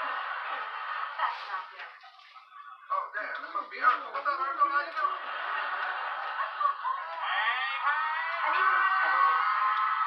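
Indistinct voices talking in a small room, with a quieter stretch about two seconds in.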